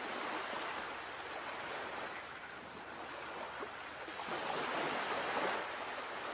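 Sea waves washing: a steady rush that swells louder about four seconds in.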